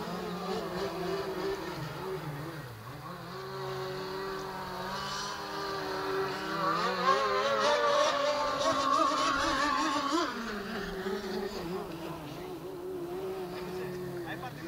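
Mystic C5000-R radio-controlled racing boat running flat out across open water, its motor whining with a wavering pitch. The whine climbs to its loudest stretch about seven to ten seconds in, then drops off suddenly.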